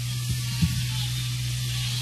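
Steady electric hum from stage amplification with hiss over it, and two light knocks in the first second.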